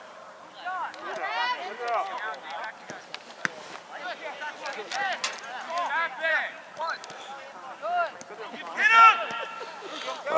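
Voices shouting across an outdoor soccer field as players and the sideline call out during play. The loudest call comes about nine seconds in, and a single sharp knock is heard about three and a half seconds in.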